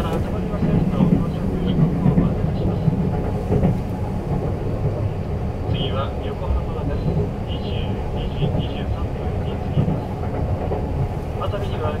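Steady low rumble of a 285-series electric sleeper train running on the rails, heard from inside a compartment. Over it comes a conductor's announcement from the compartment speaker, faint and hard to make out.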